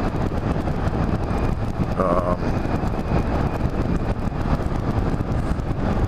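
Steady wind rush on the microphone with road and engine noise from a Yamaha Majesty maxi scooter cruising along a street.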